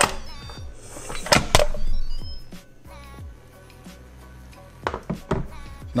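Instant Pot pressure-cooker lid being twisted open and lifted off after the steam release: a few sharp plastic clicks and knocks, over soft background music.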